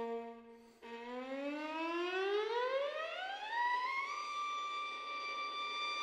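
Solo violin: a low held note dies away, then a new note slides slowly upward over more than two octaves in one long glissando and settles on a sustained high note.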